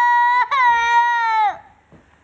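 A toddler's high-pitched wailing cry in two long held notes with a brief break between them. The second note drops in pitch and stops about a second and a half in. It is a protest cry at being refused her mother's drink.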